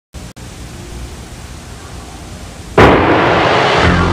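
Low hum and hiss from old videotape, then, near three-quarters of the way through, a sudden loud crash that dies away, opening a production-logo music sting; low held notes come in just before the end.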